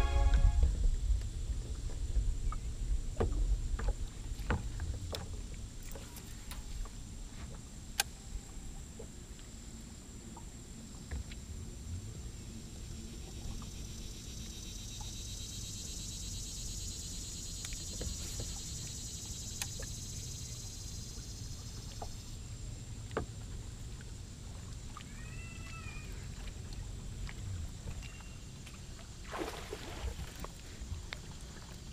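Quiet open-water ambience during a lure retrieve. A high steady buzz runs for several seconds in the middle, a short bird chirp comes a few seconds before the end, and near the end a louder splash comes as a bass strikes the bait and is hooked.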